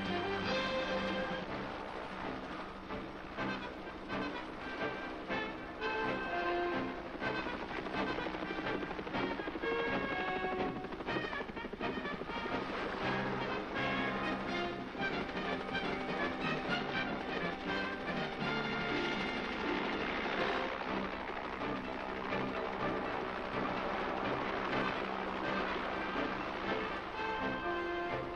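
Background film-score music, a run of pitched notes that changes throughout.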